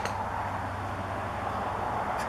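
Steady outdoor background noise with a low, constant hum underneath and no distinct events.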